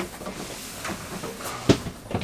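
A person shuffling sideways through a tight gap between cabinets, with clothing and body brushing the cabinetry and one sharp knock near the end.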